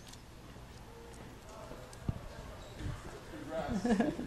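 Footsteps on a hard studio floor: a sharp low thud about two seconds in and a few softer thuds after it, over quiet room tone. Faint voices rise near the end.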